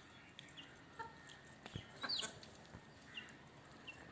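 Domestic chickens feeding: faint clucking and short high peeps from hens and a chick, with a few light taps and one louder falling call about two seconds in.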